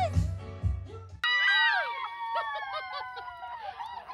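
Party music with a heavy bass beat, cut off suddenly about a second in, followed by women's high-pitched excited squeals and shrieks, some held long.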